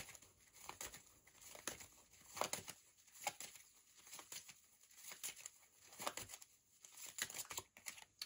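Tarot cards being shuffled by hand: a faint, irregular run of soft card flicks and slides.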